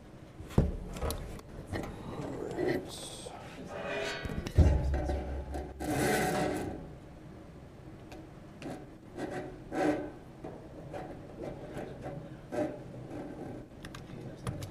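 Handling noise from a laptop being set up on a wooden lectern: irregular knocks, rubbing and scraping, with a heavy thump about four and a half seconds in and a brief hissy scrape just after, then scattered small clicks.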